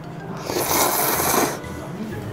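A person slurping a mouthful of ramen noodles: one noisy slurp lasting about a second, with background music underneath.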